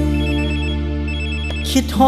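A telephone ring effect in a Thai luk thung song: two short trilling rings about a second apart, over a held chord from the backing band.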